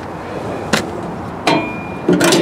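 Two sharp clicks about three-quarters of a second apart, the second followed by a faint metallic ring, as the latch of a trailer water heater's outside access door is handled, over a steady background hiss.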